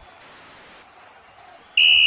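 A referee's whistle blown once in a short, loud blast near the end, calling a foul, after faint background hiss.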